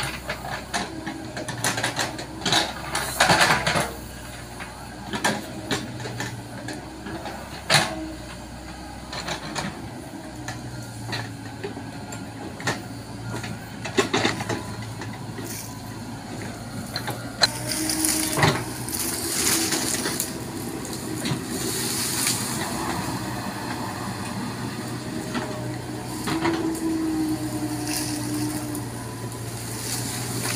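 Komatsu PC70 hydraulic excavator's diesel engine running under load as the bucket digs into crumbly soil, with frequent sharp cracks and scrapes of the bucket tearing through earth and roots. A few seconds of hiss past the middle.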